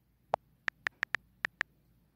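Key clicks of an iPad's on-screen keyboard as a word is typed: about eight short, sharp clicks in quick, uneven succession, the first a little lower in pitch than the rest.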